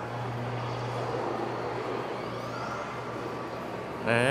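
Steady background noise of an indoor shopping mall concourse: an even low hum under a broad hiss of air-handling and general room noise.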